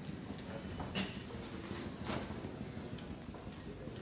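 Small rolling suitcase wheels rattling over a hard terminal floor, with footsteps, and two sharp clicks about one and two seconds in.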